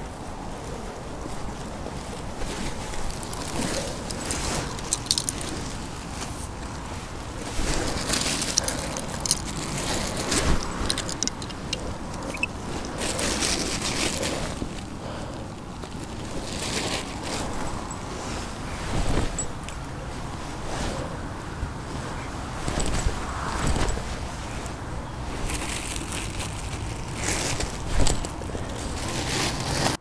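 Wind buffeting the microphone, with a rough rumble underneath and many short rustles and knocks from kit being handled on a grassy bank.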